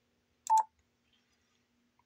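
Yaesu FT-710 transceiver giving one short, steady beep with a click about half a second in: the radio's acknowledgement of a touch or mouse click on a menu setting.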